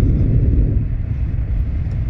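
Steady low rumble of road and engine noise inside the cabin of a car moving at speed on a highway.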